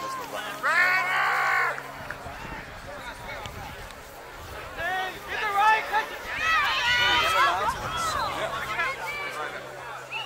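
Shouts and calls from rugby players and sideline spectators during play. There is one loud shout about a second in, and several voices overlap in the middle.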